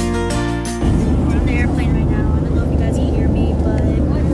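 Background music that cuts off about a second in, giving way to the steady low rumble of a jet airliner's cabin, with faint voices over it.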